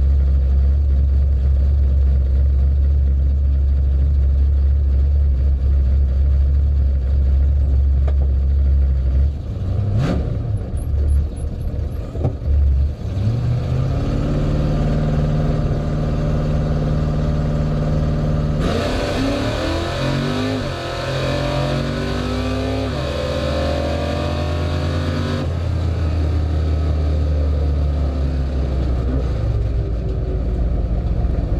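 Drag car's engine, heard from a hood-mounted camera. It runs steadily at the starting line, is blipped unevenly around ten seconds in, then revs build and are held. About two-thirds of the way in it launches into a full-throttle pass, the pitch climbing and dropping in steps through the gears, until the driver lifts off near the end and it coasts.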